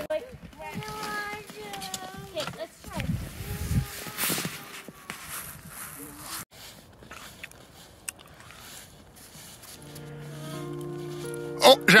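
A young child's high voice calling out in the first few seconds, with a brief low rumble of wind on the microphone. Near the end, background music with sustained chords comes in.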